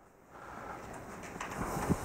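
Faint room noise with a few soft low thuds near the end: footsteps of a man walking across a church platform.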